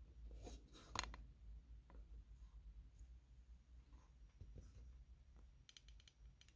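Near silence with faint rustling and a few small clicks, the sharpest about a second in, from the camera being handled and repositioned.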